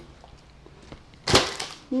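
A single sharp knock about a second in, as a box is set down on the floor.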